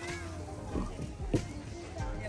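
Background music with high-pitched children's voices calling out over it, one sharper short cry just past the middle.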